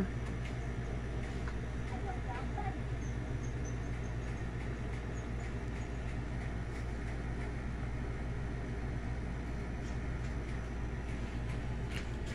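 Steady low background rumble, with a few faint short chirps about two seconds in.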